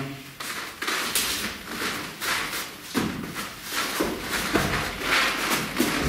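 Irregular scuffing and rustling of feet shuffling on training mats and clothing moving as two men close in and grapple, with a few soft body-contact thuds.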